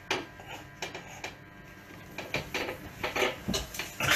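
A 60 kg barbell and a home weight bench under a bench press, giving short, irregular clicks and knocks.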